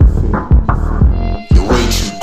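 Hip hop track: a beat with heavy, deep bass hits and a rapped vocal over it.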